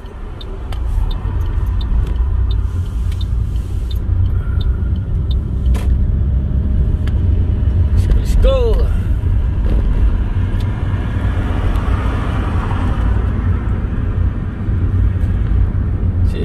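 Car pulling away and driving, a steady low rumble of engine and road noise heard from inside the cabin, building over the first couple of seconds. A short squeak comes about halfway through.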